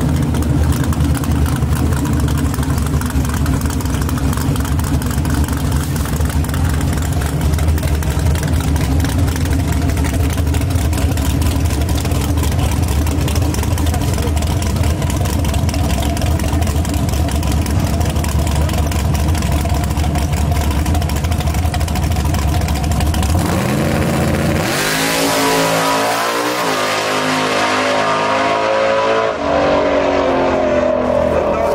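Drag car's engine idling loud and steady at the starting line, then launching about 24 seconds in, its note climbing in steps through the gears as the car pulls away down the track.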